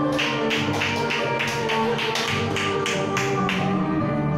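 Enka karaoke backing track playing an instrumental passage, with a steady sharp tapping beat, about four strokes a second, over it.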